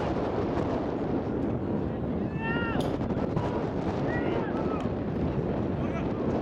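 Shouted calls from players or spectators around a rugby pitch, a few short high-pitched cries, the loudest about two and a half seconds in, over a steady rushing background noise.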